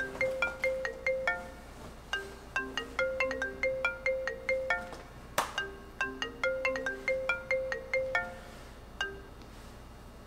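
Mobile phone ringing with a marimba-style ringtone: a short melodic phrase of struck notes repeated about every two and a half seconds, with a single sharp click about five seconds in. It stops after about nine seconds as the call is answered.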